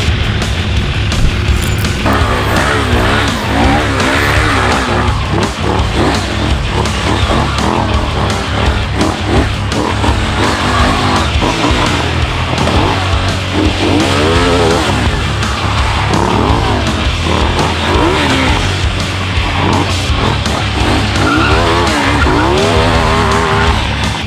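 Hard rock music over a KTM Duke stunt motorcycle's engine revving up and down in rapid rises and falls of pitch from about two seconds in, with the rear tyre squealing and skidding as the bike drifts.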